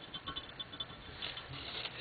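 Fingernails picking and scraping dried acrylic enamel paint off the handle of a glass pitcher: a faint run of small ticks and scratches.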